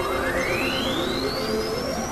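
Layered experimental electronic music: a pure tone sweeps smoothly upward in pitch across the two seconds, ending high, over a dense bed of steady drone tones and noise. A second upward sweep starts low near the end.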